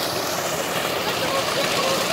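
Steady rush of water from swimming-pool fountains, under a hubbub of distant voices from people in the pool.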